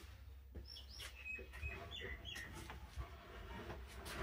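A small bird chirping, a quick run of short high calls in the first half, with a few knocks of a wooden plank being handled.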